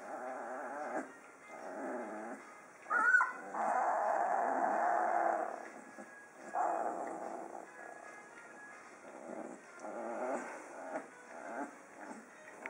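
Young Magyar vizsla puppies growling and whining while they tussle with their mother, in several short bouts. There is a sharp cry about three seconds in, followed by the loudest sound, a long drawn-out whine lasting about two seconds.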